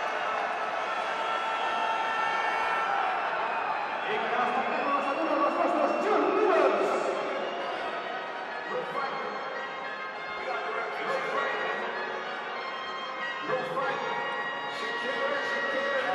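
Crowd chatter from a packed indoor sports hall, echoing, with music playing over it.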